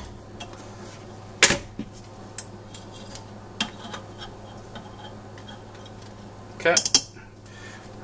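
Metal clinks of a wrench and a metal weight knocking against a stainless steel saucepan: one sharp clink about a second and a half in, a few lighter taps after it, and a quick cluster near the end. A steady low hum runs underneath.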